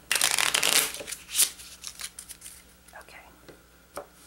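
Playing cards being shuffled in the hands for about a second, followed by a sharp card snap and fainter sliding and tapping as cards are set down on a wooden table.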